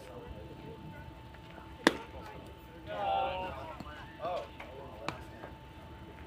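A pitch arriving at home plate with one sharp, loud pop about two seconds in, followed by raised voices calling out across the field and a fainter click near the end.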